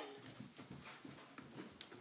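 Near silence: quiet room tone with a couple of faint clicks in the second half.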